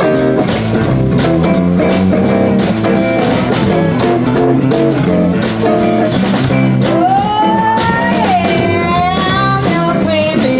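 A live blues band plays a shuffle in C on electric guitars and drum kit, the drums keeping a steady beat. About seven seconds in, a woman's voice comes in, sliding up into a long held note.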